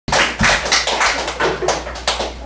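Hand claps close to the microphone, about four or five a second and slightly uneven: applause.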